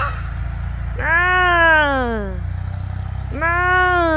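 ATV engine running steadily with a low hum. Over it come two long calls, each falling in pitch, the first about a second in and the second near the end.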